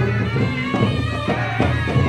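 Traditional Ladakhi folk music for a group dance: a wind instrument plays a melody over a steady low drone, with drum strokes beating time.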